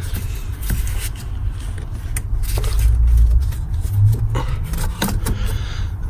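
Rubber turbo pipe on a Renault 1.5 dCi engine being pulled and twisted by hand to work it free: scattered clicks and scrapes over a low rumble.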